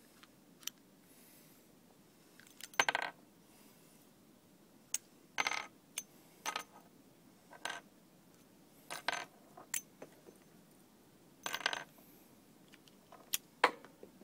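Brass revolver cartridges clinking against each other and a hard surface in short bursts every two to three seconds, with single sharp clicks between them.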